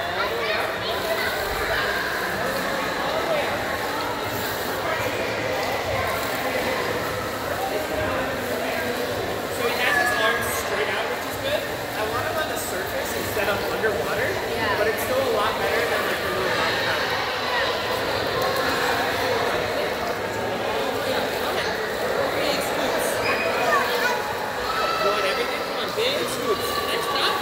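Indoor swimming pool hubbub: many voices overlapping and echoing around a large hall, with water splashing.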